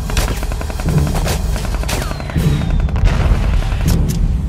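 Gunfire: scattered rifle shots with a bullet whizzing past in a falling whine about halfway through, over dramatic music with low drum hits about every second and a half.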